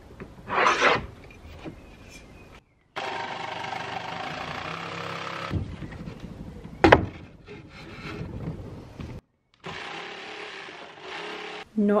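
Electric saw cutting a wooden board in a few short stretches of steady motor noise, with a sharp knock of wood about seven seconds in and a brief scraping burst near the start.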